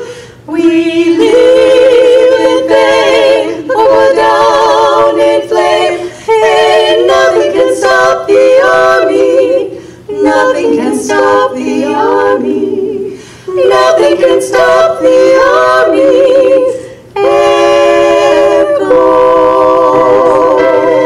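Three women singing a cappella in close harmony into microphones, their voices held with vibrato. The singing runs in phrases, with brief breaks between them.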